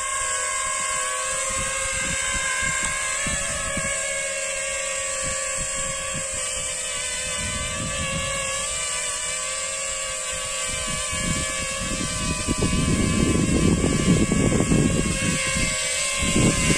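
Small quadcopter's four Racerstar BR1806 2280KV brushless motors spinning Gemfan 5125 triblade propellers in a hover, a steady high multi-toned whine. A low buffeting rumble grows louder over the last few seconds.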